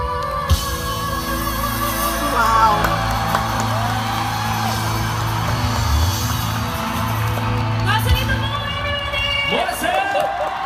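A live pop ballad duet, with male and female voices holding and bending long notes over the band's accompaniment, while a concert audience cheers and whoops.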